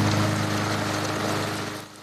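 Walk-behind rotary push mower's small petrol engine running at a steady pitch while it is pushed over grass, fading away near the end.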